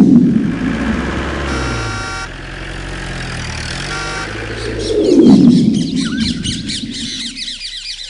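Birds chirping over a low steady drone, with two loud swells of sound, one at the start and one about five seconds in.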